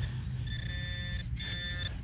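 Handheld metal-detecting pinpointer sounding a steady electronic buzz-tone as it is held over a dug hole. It sounds twice, about half a second in for nearly a second and again briefly near the end, alerting on the buried target, a crusty modern penny.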